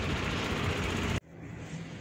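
Steady street traffic noise for about a second, cut off abruptly and replaced by a much quieter background with a faint steady low hum.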